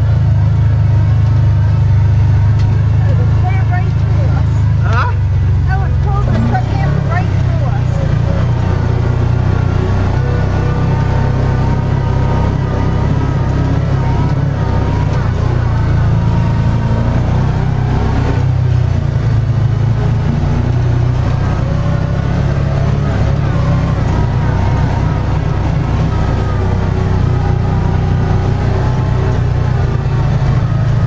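Side-by-side UTV engine and drivetrain running steadily with a deep rumble while driving over slickrock. Faint music with a wavering melody sounds over it.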